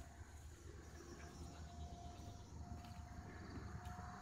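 Quiet outdoor background: a steady low hum with a faint thin whine that sets in about a second in.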